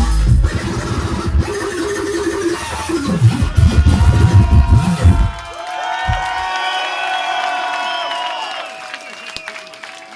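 Drum and bass DJ set playing loud over a club sound system. About five seconds in, the bass and drums drop out into a breakdown of high, sustained synth notes that slide up and down in pitch.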